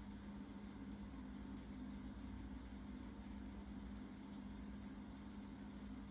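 Quiet room tone: a steady low hum with a faint hiss and no distinct events.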